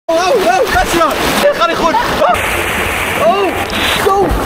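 Excited shouts and shrieks over splashing, rushing water in a wild-water channel. About two seconds in it changes to a steady rush of water pouring out of a water slide's outlet, with one more shout.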